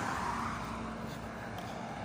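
Steady road-traffic noise of a car passing, a tyre rush that eases off slightly over the two seconds, with a faint low hum early on.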